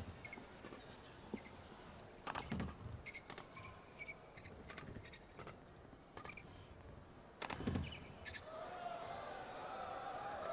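Badminton rally: a string of sharp racket hits on the shuttlecock and short shoe squeaks on the court floor. The rally ends with a hard hit about three quarters of the way through, and a crowd murmur rises near the end.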